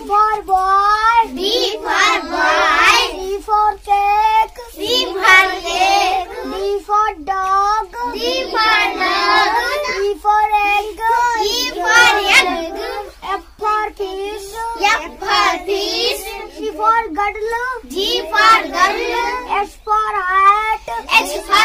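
A young boy chanting the English alphabet letter by letter in a sing-song voice, each letter followed by its picture word ('for …').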